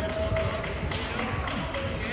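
Background chatter of many people in a large sports hall, a steady murmur of overlapping voices with no single voice standing out.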